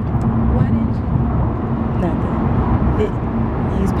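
Road noise inside a moving car: a steady low rumble of tyres and engine heard from the back seat, with a faint hum over it.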